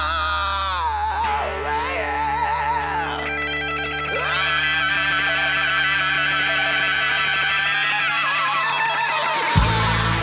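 Male rock singer belting long, high held notes with wide vibrato over a distorted electric guitar and bass backing. A loud band hit comes just before the end.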